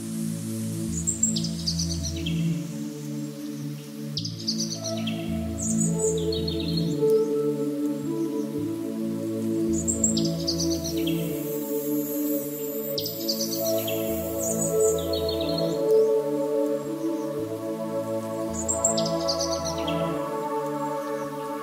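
Calm instrumental background music of held, soft chords with a slow bass, overlaid with bird chirps that recur in the same pattern about every nine seconds, as in a looped nature-ambience track.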